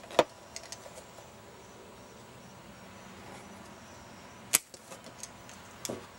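Bonsai scissors snipping off ficus leaves: two sharp snips, one just after the start and another about four and a half seconds in, with a few faint clicks between.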